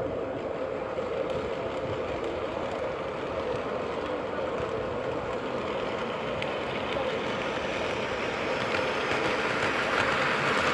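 O gauge model diesel train with passenger cars rolling along the track, a steady running rumble of wheels and motor that grows louder toward the end as the train comes close.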